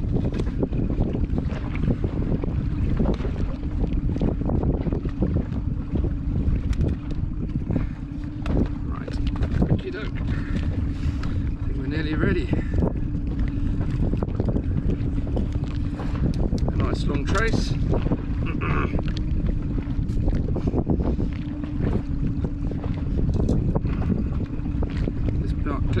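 Wind buffeting the microphone on a small inflatable boat at sea: a dense, steady low rumble with a constant low hum underneath. Scattered small clicks and knocks come from fishing tackle being handled.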